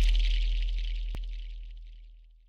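The fading tail of a logo intro sound effect: a deep low rumble and a high shimmer dying away steadily, with a single faint click about a second in.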